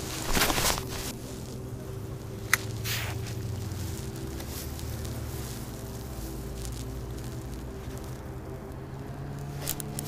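Outboard motor of a boat on the river running steadily, a low even hum. A brief rustle comes right at the start and a single sharp click about two and a half seconds in.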